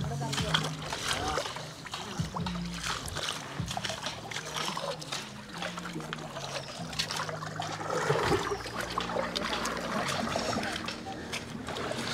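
Wooden canoe being paddled past: paddle strokes splashing and dripping in calm water, with faint voices in the background.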